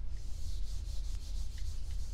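A hand-held eraser wiping a dry-erase whiteboard in quick back-and-forth strokes, a scratchy hiss that stops near the end.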